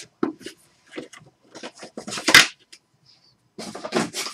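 Handling noises from trading cards and their packaging on a table: scattered light clicks and taps, with one louder, brief rustling scrape a little past the middle.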